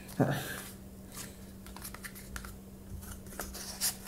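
Empty cardboard toilet-paper tubes being squeezed and pushed inside one another: faint scattered scrapes and crinkles of the cardboard as an eleventh tube is forced into a tight stack of ten.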